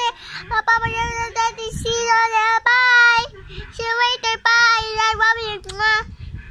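A young girl singing in short phrases, mostly on one pitch, with a longer held note about three seconds in.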